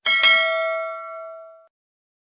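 Notification-bell 'ding' sound effect: a bell struck twice in quick succession, ringing out and fading away over about a second and a half.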